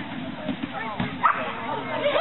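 A dog barking as it runs, with people's voices behind it; one sharp bark stands out about a second in.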